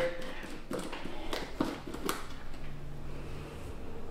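Faint handling sounds of a small spice jar being opened: a few light clicks and ticks as the lid is twisted off and the jar handled, in the first couple of seconds.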